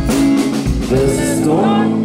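An indie rock band playing live on drum kit, electric guitar and bass, with a male voice singing into a microphone. Drum hits come at the start and again just over half a second in.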